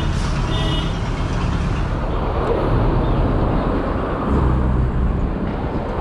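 Road traffic: motor vehicles running close by, over a steady low wind rumble on the camera as the bicycle rides along. Two brief high-pitched squeals sound in the first second.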